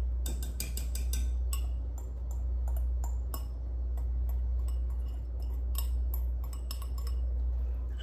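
Light, irregular clinks and ticks of a glass bowl and a wire whisk against a metal pot as grated cheese is tipped into cream sauce. A steady low hum runs underneath.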